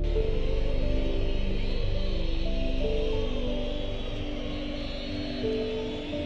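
Background music of slow, held notes that change every second or so, growing gradually quieter through the second half.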